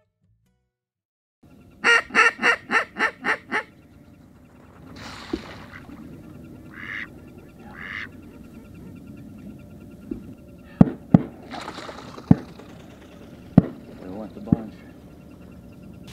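Mallard quacking: a quick run of about eight quacks that fade away, starting about two seconds in, with two more short calls later. Several sharp knocks follow in the second half, over faint outdoor noise.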